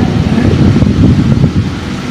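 Loud, irregular low rumbling noise filling a pause in speech, with no clear pitch or rhythm.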